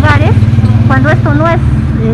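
Steady low rumble of a vehicle engine idling close by, with a woman's voice speaking over it in short bursts.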